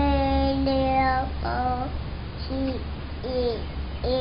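A toddler's voice singing out a long held note, then three short sliding syllables.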